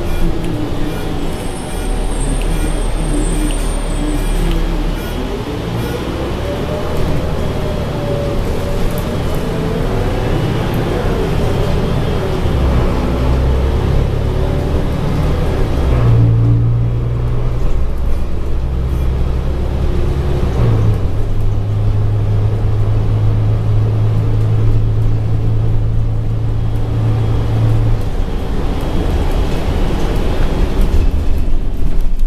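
Inside a moving city bus: engine and road rumble, with a whine that rises and falls in pitch over the first dozen seconds. From about halfway it settles into a steady low engine drone.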